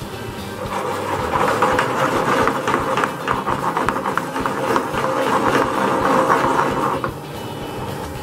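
Milk-based cream sauce bubbling in a frying pan, a busy crackle of popping bubbles that fades out about seven seconds in, with background music underneath.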